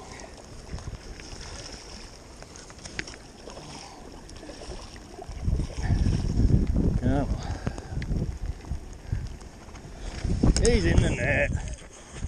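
Wind on the microphone, then from about five seconds in a louder, irregular rumble and splashing as a hooked trout thrashes at the surface and is drawn into a landing net, with a few short wordless exclamations from the angler.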